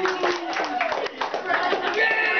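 A small group of people applauding by hand, a quick scatter of claps, with excited voices mixed in.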